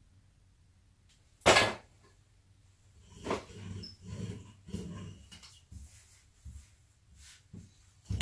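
Wooden rolling pin rolled back and forth over pie crust dough on a floured wooden counter: a run of short rolling strokes, about one or two a second, after a single loud thud about a second and a half in.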